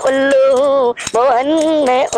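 A man singing a Hindi devotional song in long held notes with a wavering pitch, over jingling metal percussion, with a brief break about a second in.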